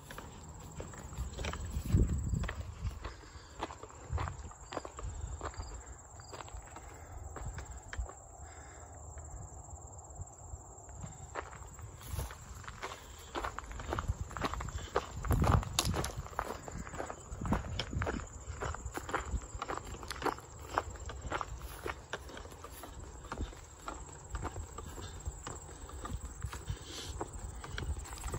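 A hiker's footsteps crunching along a rocky, gravelly trail, with the tips of trekking poles clicking on the rock in an uneven rhythm. A couple of louder low thumps stand out, one about two seconds in and one a little past the middle.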